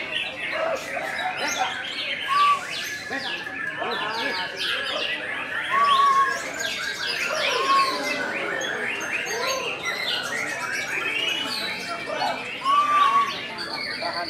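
Caged songbirds singing densely over one another, with a white-rumped shama's song among them, short arched whistles coming back every few seconds. Voices murmur underneath.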